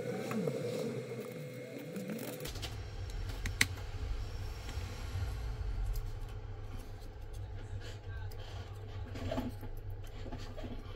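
Small handling clicks of fingers pressing flex-cable connectors and parts into a smartphone's frame. One sharper click comes about three and a half seconds in, over a low hum.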